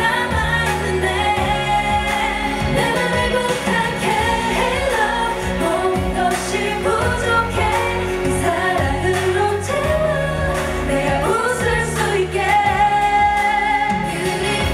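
Female K-pop singers singing live into handheld microphones over an amplified pop backing track, the lead voice passing from one member to another.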